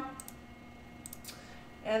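A few faint, short clicks in two small clusters over quiet room tone.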